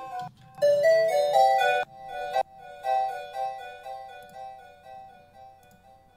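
Electronic music played back from a track in progress: a bright, plucked synth arpeggio with a harpsichord-like tone. It breaks off about two seconds in, and its delay echoes keep repeating the notes more and more faintly until they die away.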